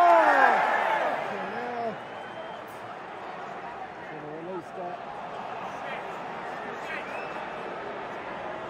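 Football stadium crowd: a loud burst of shouting from many fans at the start, dying down within about two seconds to a steady crowd noise.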